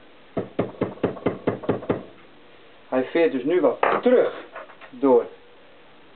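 Hammer tapping a brake-hose end fitting held by hand: about a dozen quick, light knocks in under two seconds, roughly seven a second, tapping the fitting onto the steel-braided hose.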